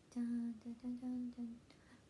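A woman humming a song's melody in a quick string of short, held notes.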